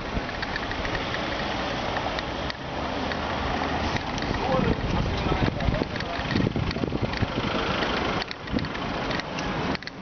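Bicycle rattling over cobblestones: a continuous dense clatter of small knocks and jolts.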